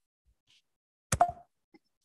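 Near silence broken about a second in by a single short knock, with a brief ringing tone after it.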